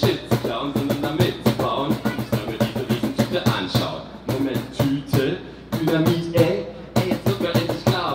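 Live German hip hop: a man's voice over a fast cajón beat slapped by hand, the strikes coming several times a second.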